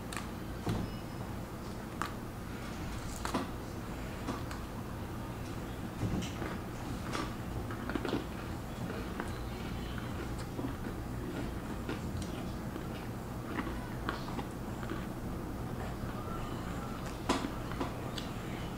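Oreo sandwich cookies being chewed, with a dozen or so faint irregular crunches and clicks over a steady low room hum. The sharpest click comes near the end.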